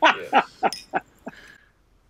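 A man laughing, a string of short 'ha' bursts about three a second that tail off and stop about a second and a half in.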